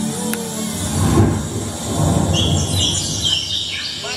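Sound effects played on a Roland XPS-30 synthesizer: a low rumble like thunder, then high chirping bird-like calls from about two seconds in.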